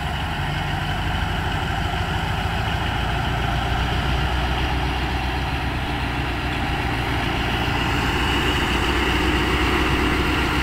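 Diesel-electric locomotive's engine running steadily with a deep drone, growing gradually louder toward the end.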